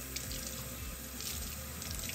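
Kitchen faucet running, with cold water pouring over a head of cauliflower and splashing into a stainless steel sink as it is rinsed. The water sound is steady throughout.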